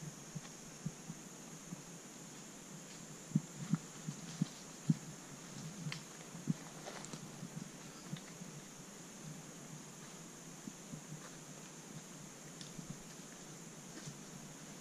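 Quiet woodland ambience with a steady faint high hiss and a few soft, irregular low thumps, clustered a few seconds in.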